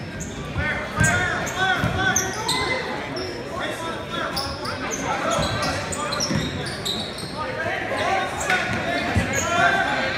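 Basketball bouncing on a hardwood gym floor in irregular thumps, with many short high sneaker squeaks from players moving on the court and voices of players and spectators, all echoing in a large gym.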